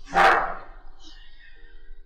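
A dog barks once, short and loud, just after the start, over soft background music.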